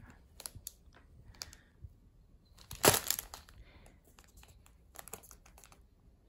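Plastic packaging being handled, crinkling in short irregular crackles, with the loudest rustle about three seconds in.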